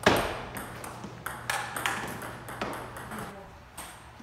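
Table tennis rally: the ball clicking off bats and the table in short, irregularly spaced knocks. A hard hit at the very start is much the loudest.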